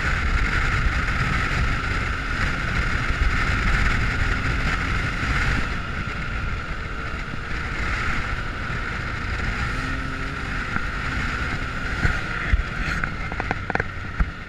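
Can-Am Maverick X3 side-by-side on the move, its turbocharged three-cylinder engine running steadily under a rumble of wind buffeting the microphone. A few sharp knocks come near the end.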